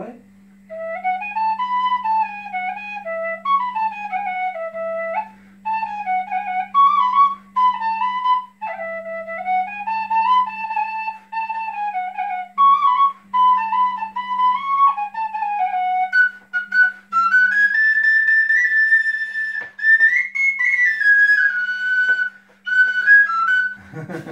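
Serbian frula (wooden shepherd's flute) played solo: a flowing melody of quick rising and falling notes that moves up into a higher register about two-thirds of the way through and holds longer notes there.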